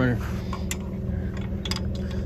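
A few light metallic clicks from a hitch bike rack's quick-release pin and fittings being handled, over a steady low hum.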